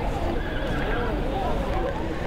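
A horse neighing, its call wavering up and down in pitch, over background voices.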